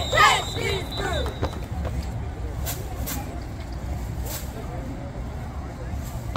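Girls' voices chanting a cheer, fading out in the first second and a half, then open-air ambience with a steady low rumble and a few short, sharp sounds.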